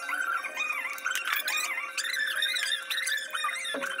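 Music with a high, wavering melody line over a steady held tone.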